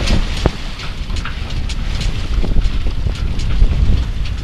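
Wind buffeting the microphone on a small sailboat under sail, a loud, steady low rumble, with scattered light splashes of water against the hull and one sharp knock about half a second in.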